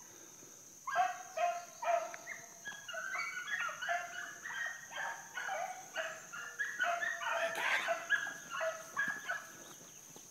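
A pack of rabbit hounds giving mouth while running a rabbit's trail: many overlapping high-pitched yelps and bawls from several dogs, starting about a second in and going on until near the end.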